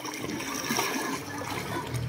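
Swimming-pool water sloshing and splashing in a steady, even wash of noise.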